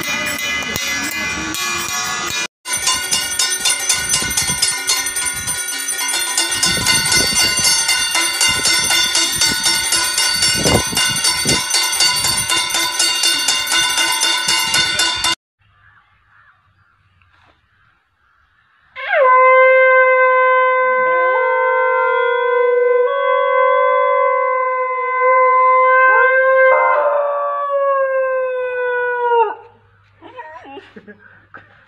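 A loud, dense, rhythmic din of metal banging with horn-like notes, cut off abruptly. After a few seconds of near quiet, a conch shell is blown in one long steady note for about ten seconds, which wavers and slides down in pitch near the end before it stops.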